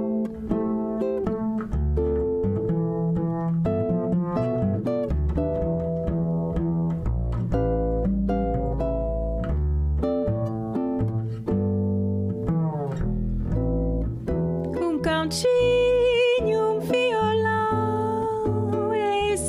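Ukulele and pizzicato double bass playing a bossa nova passage, the bass notes heavy at the bottom; about 15 s in a woman's singing voice comes in over them.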